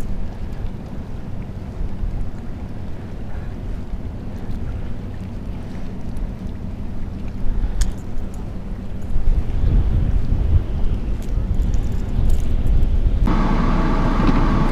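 Wind buffeting the microphone, a low rumble that grows stronger in the second half. Near the end it cuts to the steady rush of a car's air conditioning blowing hard inside the cabin.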